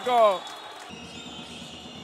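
The end of the commentator's excited shout, then faint indoor basketball-game sound: arena background with a basketball being dribbled on the hardwood court.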